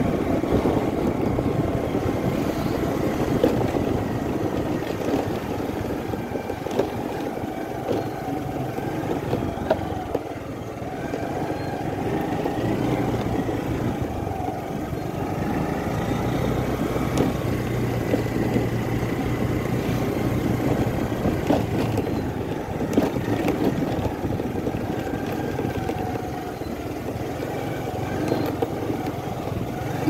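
A motor vehicle's engine running steadily while moving along a dirt track, with a constant rumble and a few faint clicks.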